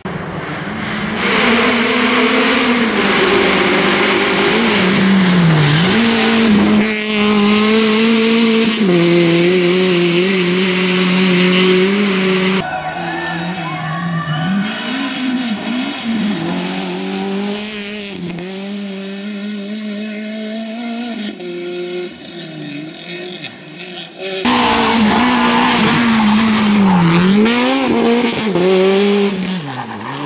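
Suzuki Swift rally car's engine revving hard as it drives through a stage, the note held high and dipping briefly at each gear change or lift before climbing again. The sound comes as several separate passes that change abruptly every few seconds.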